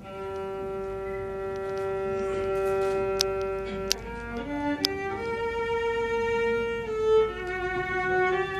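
Solo violin playing after a brief pause: one long held note of about four seconds, then a run of shorter notes stepping up and down. A few sharp clicks sound in the middle.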